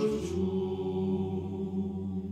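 Men's choir singing a cappella in close harmony. A new chord begins right at the start with a brief sibilant consonant, then is held steadily over a deep bass note.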